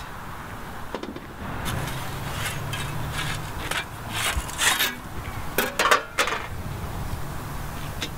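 Metal bread peel scraping and knocking on the brick floor of a masonry bread oven as baked sourdough loaves are shifted. It comes as a run of short scrapes and clatters, the loudest a few seconds in.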